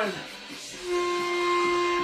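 A single steady whistle, held for about a second, starting about a second in: the signal to switch to the next exercise. Background music plays throughout.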